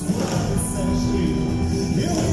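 Live rock band playing loud: drums with cymbals, bass and guitar, over held notes.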